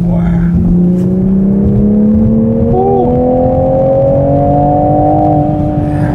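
Toyota GR Supra's engine and exhaust in sport mode, accelerating with the note rising slowly and steadily in pitch. It has a deep, resonant tone rather than popping crackles.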